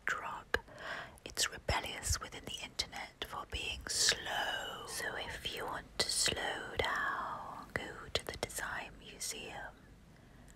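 A person whispering close to a microphone, ASMR-style, with sharp hissing sibilants and soft clicks between the words.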